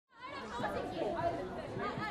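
Background chatter of a group of people talking and calling out at once, with no single voice standing out. It fades in just after the start.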